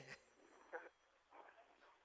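Near silence, with two faint, brief sounds a little under a second apart.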